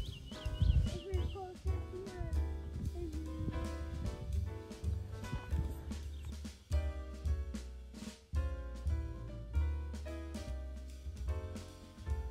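Background music with a drum kit keeping a steady beat under sustained instrumental notes.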